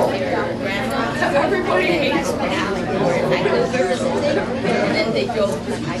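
Many people talking at once: overlapping conversational chatter, with a steady low hum underneath.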